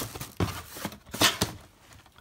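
Hands moving shoes into a storage unit: a few short rustles and light knocks, the loudest a little past the middle.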